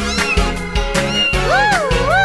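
A cat meowing twice near the end, each meow rising and falling in pitch, over cheerful children's music.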